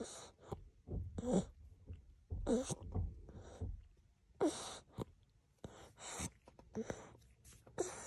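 A baby nursing at the breast: short breathy sucking and swallowing noises with small voiced sounds, coming irregularly about once a second.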